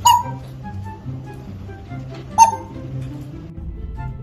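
Two short, loud calls from an African grey parrot, one right at the start and one about two and a half seconds later, over background music.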